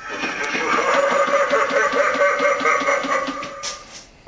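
Animatronic butler prop's built-in sound playback: a pulsing sound, about four or five beats a second, over a steady tone, which cuts off about three and a half seconds in.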